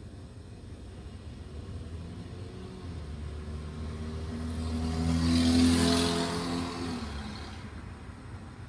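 A motor vehicle passing by: its engine hum and road noise swell over a few seconds to a peak past the middle, then fade away near the end.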